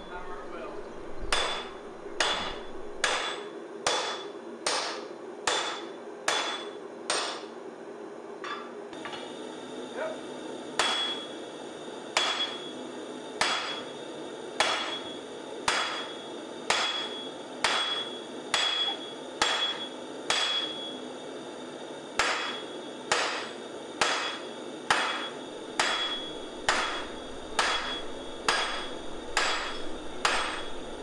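Sledgehammer blows struck by a striker onto a smith's handled tool on a white-hot steel block on the anvil, forging a spoon swage by hand. The blows come steadily, about three every two seconds, each with a short metallic ring, with a couple of brief pauses.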